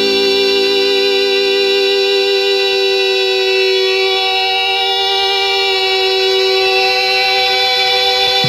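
Recorded electric guitar solo: one long single note, heavily compressed and distorted, held in feedback and bent. Two double-tracked parts sit slightly apart in pitch, so the note wavers with beating.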